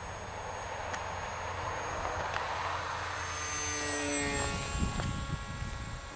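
Electric motor and propeller of a radio-controlled model glider running as it flies past, a whine whose tones fall in pitch a little after the middle as the model passes.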